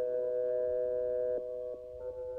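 Electronic music: a chord of several steady, pure electronic tones. The chord thins and drops in level about one and a half seconds in, leaving fainter held tones.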